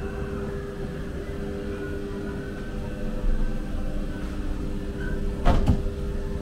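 Ghost train car rumbling along its track with a steady hum. Near the end comes a sudden loud double bang, like the car pushing through a pair of swing doors.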